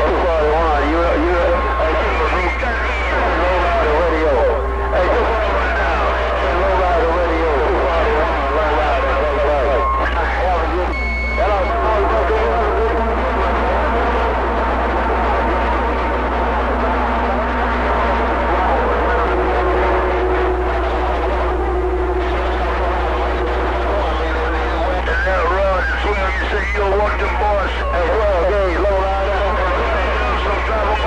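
CB radio receiver speaker playing a crowded channel of long-distance skip: several voices talking over one another, garbled and unintelligible, with steady whistle tones at several pitches from clashing carriers and a constant low hum underneath.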